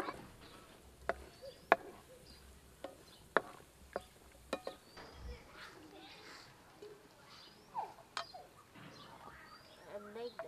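Wooden spatula knocking and scraping against a nonstick frying pan while cashew pieces are stirred and roasted, heard as a series of sharp clicks that thin out after about five seconds. Faint bird chirps sound in the background.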